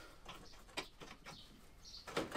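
Faint, scattered ticks and clicks of a hand tool being worked at the car's front bumper rail, fitting threaded guide studs.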